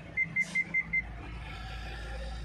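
A 2022 Chevrolet Captiva's in-cabin electronic chime: five short high beeps in quick, even succession, with a sharp click among them, over a low steady hum.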